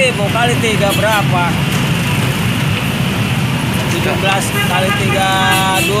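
Dense road traffic of buses and motorbikes running steadily, with a vehicle horn sounding for just under a second near the end.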